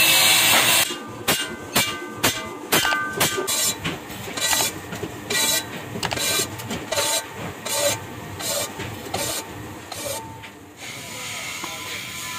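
An angle grinder with a sanding disc is running loudly against a steel pan blank for about the first second. Then a metal tool scrapes and knocks irregularly inside an iron kadai. Near the end a steady hiss from a gas cutting torch starts.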